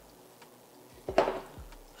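A short knock and clatter about a second in, as an aerosol can of hair freeze spray and a comb are picked up and handled.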